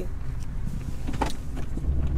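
Car engine idling with a steady low rumble, heard from inside the cabin. A few faint clicks come through, and a dull low thump sounds near the end.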